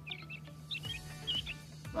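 Small birds chirping in quick short calls, over faint background music.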